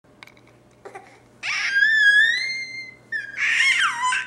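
A baby's high-pitched squeals: a long squeal starting about one and a half seconds in that rises slightly in pitch, then a second one near the end whose pitch swoops up and down.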